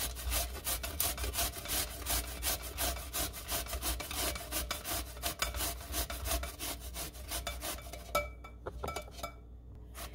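Zucchini being grated down the coarse side of a stainless steel box grater: repeated rasping strokes, about three a second, that thin out and stop shortly before the end.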